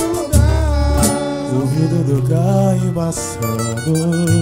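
Live pagode samba group playing: plucked strings and tantan drums, with a voice singing a melody over them. The deep bass is heaviest in the first second.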